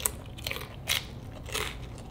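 A person chewing a crisp fried rangoon with the mouth close to the microphone: about four short, crisp crunches roughly half a second apart.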